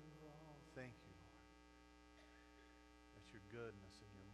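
Near silence: a low, steady electrical hum, with faint snatches of a voice about a second in and again shortly before the end.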